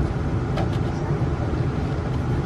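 Passenger train's steady low rumble heard inside the carriage while it runs.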